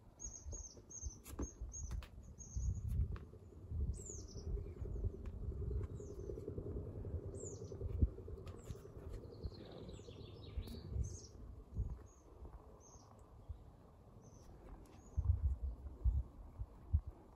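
Small woodland birds chirping and singing: a scatter of short high chirps and quick downward-sliding notes, with irregular low rumbles underneath.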